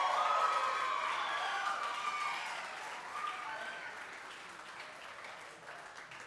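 Audience applauding and cheering a just-announced award winner, loudest at first and fading away over the last few seconds.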